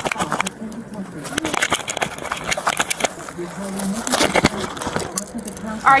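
Scattered clicks, knocks and rustling from an officer's gear and clothing handling close to a body-worn camera's microphone, with muffled voices in the background.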